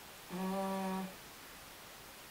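A woman hums one short, steady "mmm" at a single pitch, lasting under a second.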